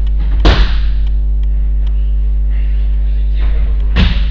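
Two loud slapping thuds, like bodies landing on gym mats, echoing through the hall: one about half a second in and another near the end. Under them runs a steady low electrical hum.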